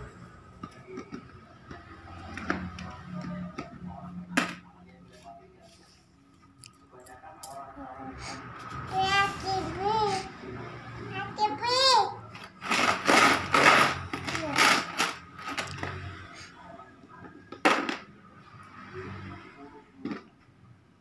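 Young children's voices babbling and squealing, with a few sharp clinks of coins being handled and dropped into a plastic coin bank.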